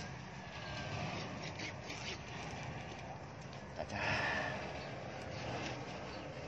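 Motorbike engine running at low speed as it rides up close, a steady low drone with a brief louder rush about four seconds in.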